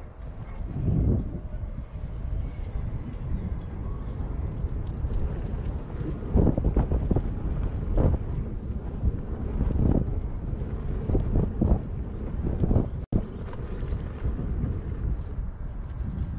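Wind rumbling on the camera microphone of a moving electric unicycle on a bumpy dirt trail. Irregular louder bursts come from the ride over the rough track. The sound drops out for an instant about thirteen seconds in.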